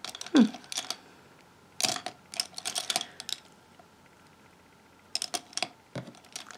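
Light clicks and taps of makeup brushes and products being handled and sorted through, coming in three short clusters, with a brief murmured "hmm" at the start.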